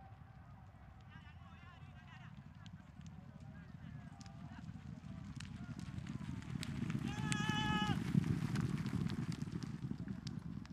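Hooves of a field of racehorses galloping on a dirt track: a low rumble that grows louder and peaks about eight seconds in as the field passes. A short high-pitched call sounds just before the peak.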